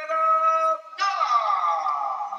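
A man's voice over the arena PA calling out the winner: one long held note, then after a short break a second drawn-out call sliding down in pitch.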